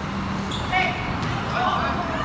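Sounds of a pickup basketball game on a concrete court: a ball bouncing, and two short pitched calls from players, one just under a second in and a longer one near the end.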